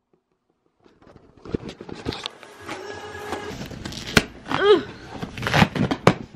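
A cardboard shipping box and its packing being opened by hand: rustling, crackling and tearing with many small clicks, starting about a second in after silence. A short vocal sound comes near the end.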